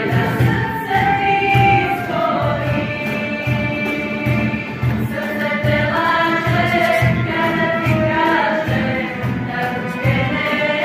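A small female choir singing in harmony, accompanied by a cajón keeping a steady low beat.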